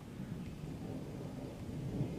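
Thunder from an approaching thunderstorm: a low, steady rumble.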